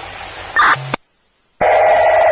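Fire-department radio traffic as heard on a scanner: static hiss at the end of a transmission and a short squelch burst a little under a second in. The audio then drops to dead silence, and the next transmission keys up loudly with a buzzy tone near the end.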